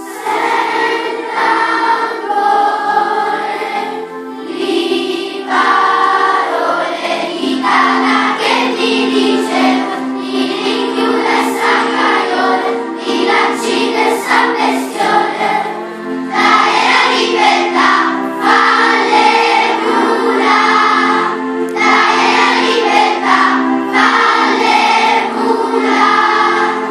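A large children's choir singing a song together, phrase by phrase, with short breaks between the phrases.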